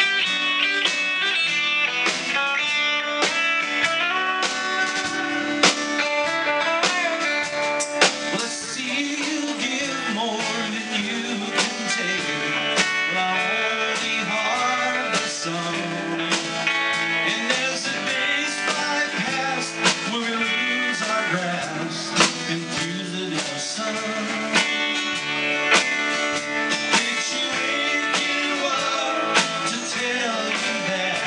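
Live classic rock band playing, guitars to the fore with sharp drum hits throughout.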